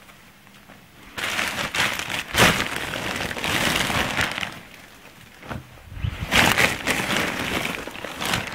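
Thin plastic bag rustling and crinkling as a hand rummages through the clothes inside it, in two spells, the first starting about a second in.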